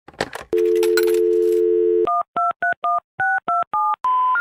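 Telephone sound effect: a few short clicks, then a steady landline dial tone for about a second and a half, then eight touch-tone keypad beeps as a number is dialed.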